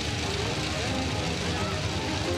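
Crowd noise from a large outdoor gathering: many voices at once over a steady din.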